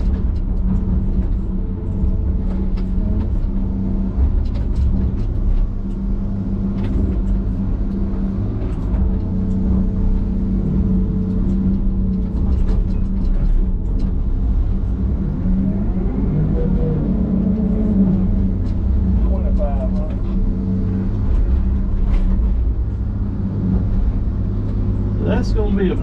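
Diesel engine of a John Deere log loader running steadily, heard from inside its cab. The engine note rises and falls briefly about two-thirds of the way through as the boom works, and scattered knocks and clunks come from the grapple handling pine logs.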